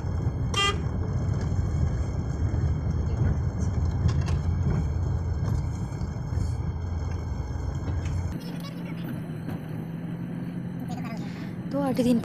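Car driving on a rough dirt road, heard from inside the cabin: a steady low rumble of engine and tyres, with a short horn toot about half a second in. The rumble cuts off suddenly after about eight seconds, leaving a quieter steady hum.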